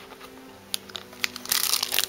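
Packaging being handled by hand: a few light clicks, then a loud burst of crinkling in the last half second.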